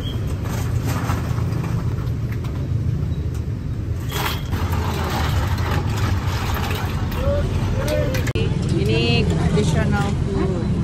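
Steady low rumble of street traffic, with a few sharp clicks. Voices join near the end.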